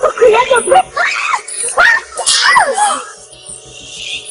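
Voices screaming and wailing over dramatic background music, with several cries that swoop up and fall in pitch; the cries die away about three seconds in, leaving the music.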